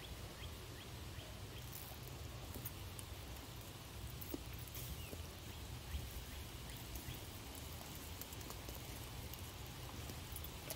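Faint scattered clicks and crackles of a scale RC rock crawler's tyres and chassis crawling slowly over rocks and dry leaf litter, over a steady low rumble.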